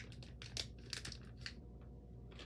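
Plastic blind-bag wrapper crinkling as it is squeezed and pulled at by hand, a run of soft crackles that thins out near the end, while the opening is being searched for.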